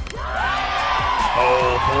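Background music with a long, drawn-out high-pitched whoop from the ballpark as a batter strikes out; the held call starts about half a second in and sags slightly in pitch toward the end.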